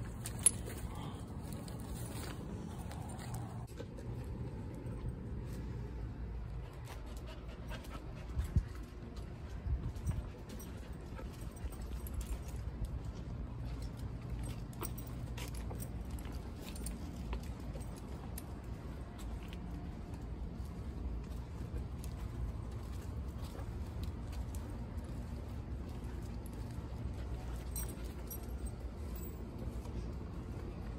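Sounds of a dog on a leash over a steady low rumble, with a few sharp knocks about half a second in and again around eight to ten seconds in.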